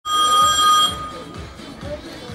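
Show-jumping start bell: one steady electronic ring lasting just under a second, then cutting off to a low background.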